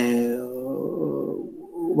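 A man's voice holding one long, drawn-out vowel at a steady low pitch, fading away after about a second and a half.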